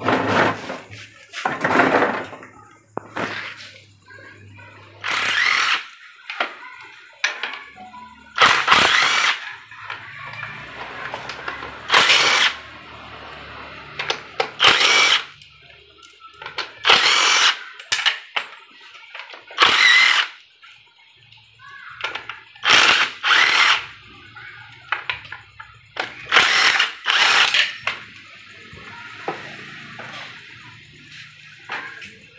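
Cordless impact wrench run in about ten short bursts, each a second or so long, undoing the bolts of an automatic transaxle's casing during teardown.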